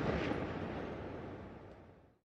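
The rumbling tail of a cinematic boom sound effect on a logo sting, dying away steadily and fading to silence at the end.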